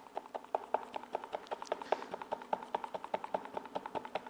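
A mixing stick stirring clear casting resin in a plastic cup, clicking against the cup's side in a quick, even run of light taps, about five or six a second.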